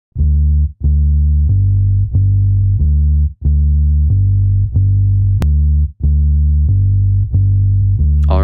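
Instrumental song intro carried by a bass line alone: a run of low, plucked-sounding notes, a new one roughly every two-thirds of a second, with short breaks between some. A single sharp click sounds about five and a half seconds in.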